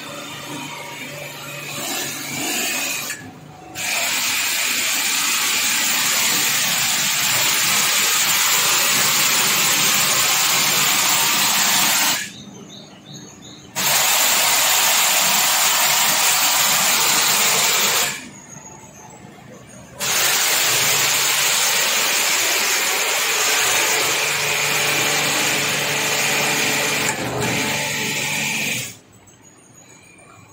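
Electric high-pressure hot water jet machine spraying through its lance, a loud steady hiss of the water jet with a faint hum beneath. The spray cuts out suddenly three times for a second or two, about twelve seconds in, about eighteen seconds in and near the end, each time starting again.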